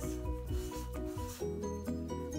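Black marker rubbing on a paper pad in short strokes for the first second or so, over background music with held notes.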